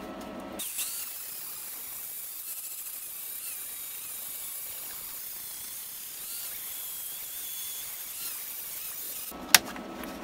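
Angle grinder with an abrasive disc grinding down freshly laid gasless-welder seams on a steel floor patch. The weld is being cleaned up to show where penetration was poor. It is a steady, high-pitched grinding that starts abruptly just after the start and stops shortly before the end, followed by a single sharp click.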